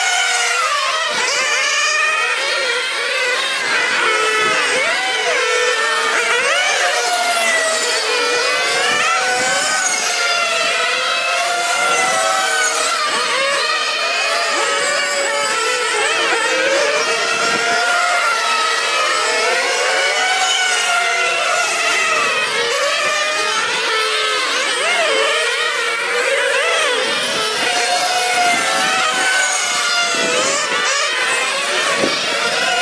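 Several 1/8-scale nitro on-road RC race cars' small two-stroke glow engines running hard, their high-pitched whine rising and falling over and over as they accelerate and lift through the corners. Several engines overlap at different pitches.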